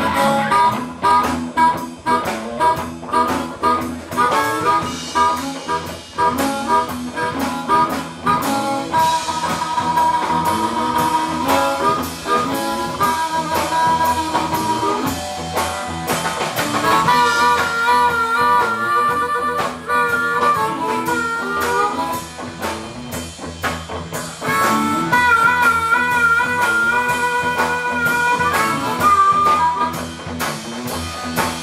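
Live blues-rock band playing an instrumental break: a harmonica cupped against a vocal microphone plays held, bending notes over electric guitars, electric bass and a drum kit.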